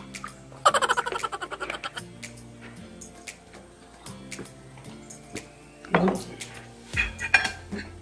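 Water poured from a plastic bottle into a glass, a gurgling pour lasting about a second, over steady background music. Near the end, sharp clinks of glass and cutlery.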